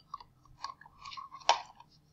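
Faint mouth noises close to a microphone, lip smacks and small tongue clicks, with one sharper click about one and a half seconds in.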